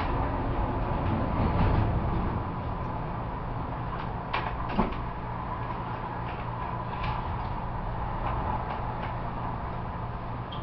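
Steady low hum of room noise, with a few scattered light clicks and knocks; the sharpest knock comes just before the five-second mark.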